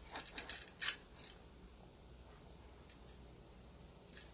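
A quick run of small clicks and scrapes in the first second or so, the last one the loudest, then faint room tone.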